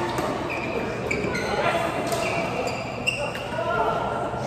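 Badminton rally in a large echoing hall: sharp clicks of rackets hitting the shuttlecock, the loudest about three seconds in, and short squeaks of court shoes on the floor, over background voices.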